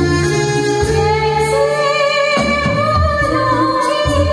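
A woman singing with a live band backing her. Her voice enters about a second and a half in, holding long notes with vibrato over the band's accompaniment.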